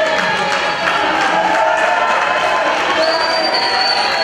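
A large audience cheering and shouting, loud and steady throughout, with a sustained high-pitched tone joining in about three seconds in.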